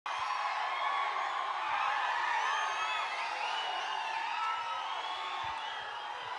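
A large audience cheering and shouting, many voices overlapping at a steady level.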